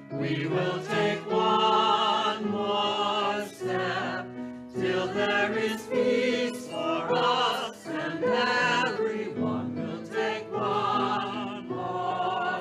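A choir singing a hymn in phrases of held notes with a slight waver, pausing briefly between lines.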